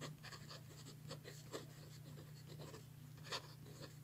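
Pen nib scratching on paper in short, irregular strokes as handwriting is put down, with one louder stroke a little past three seconds in. It is faint, over a steady low hum.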